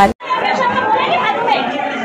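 A crowd of people talking over one another, a dense, steady din of overlapping voices with no single speaker standing out. It cuts in abruptly just after the last word of a station-ident voice.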